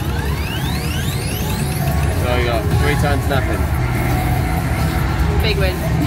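Electronic jingles and sound effects from a Dazzling Thunder slot machine spinning its multiplier wheel during free games, with sweeps rising steeply in pitch over the first two seconds. A steady low rumble runs underneath.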